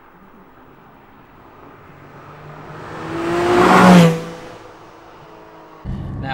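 Porsche 718 Cayman GT4's naturally aspirated 4-litre flat-six driving past: the engine note and tyre noise grow louder as the car approaches, peak about four seconds in, and drop in pitch as it passes, then fade quickly.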